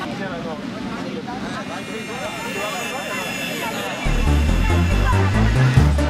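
Crowd of children and onlookers shouting and chattering, with music building underneath. About four seconds in, electronic music with a heavy, pulsing bass beat comes in loudly.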